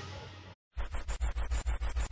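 The tail of an electric-guitar music sting fading out, then after a brief silence a rapid stuttering scratch-like transition sound effect, about nine pulses a second.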